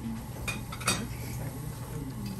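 A spoon clinking against a dish twice, about half a second apart, the second clink louder.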